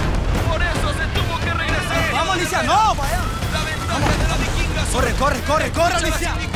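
Background music with excited shouting voices over it.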